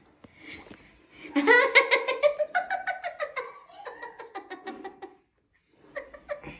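A person laughing: a long run of quick, even 'ha-ha' pulses that fall in pitch, then cut off abruptly near the end.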